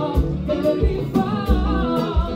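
Live Haitian konpa band playing: sung vocals over electric guitar and a steady, pulsing low beat of drums and bass.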